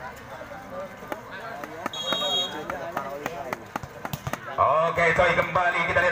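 Crowd voices at a volleyball match with scattered sharp taps. A referee's whistle blows once, briefly, about two seconds in, signalling play to resume after a timeout. From about four and a half seconds a man's voice talks loudly and close by.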